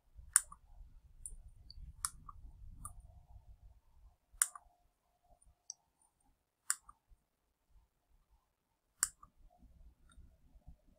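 Computer mouse clicking five times, roughly every two seconds, each click a quick press and release, with a faint low rumble under the first few.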